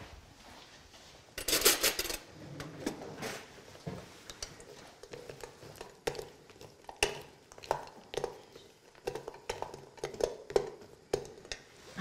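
A metal spoon stirring white chocolate pieces in a stainless steel bain-marie bowl, clinking and scraping against the bowl again and again. There is a louder clatter about one and a half seconds in.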